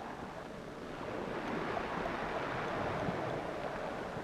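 Steady background hiss and rumble with no distinct events, like wind or noise on an open microphone.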